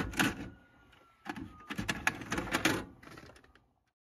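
Mechanical clicking and clacking from a Panasonic VHS VCR, with a faint thin whine: a couple of clicks at the start, a short pause, then a dense run of clacks for about a second and a half that dies away before the end.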